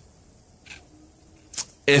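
A pause in a man's speech: low steady room tone, a faint short noise, then a short sharp sound about a second and a half in, just before his voice comes back in near the end.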